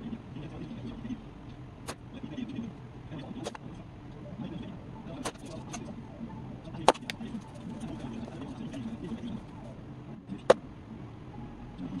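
Slingshot shots striking a target of denim over a cardboard tube and cardboard box: a series of separate sharp cracks, the loudest about seven and about ten and a half seconds in, over a low steady background murmur.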